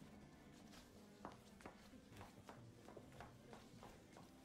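Near silence: a faint steady hum with a few faint, scattered clicks.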